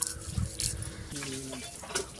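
Crisp snaps of an onion being cut against an upright floor-mounted blade and its dry skin being peeled, with a short voiced call about a second in.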